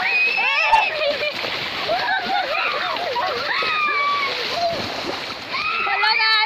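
Splashing and sloshing of people thrashing and falling in muddy paddy water, with one sharp splash about a second in. It runs under a crowd of excited voices shouting and calling out over one another.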